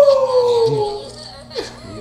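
A long, howl-like vocal note that holds and then slides slowly down in pitch, ending about a second in.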